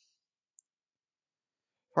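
Near silence with a single short, faint click about half a second in; a synthesized voice starts reading right at the end.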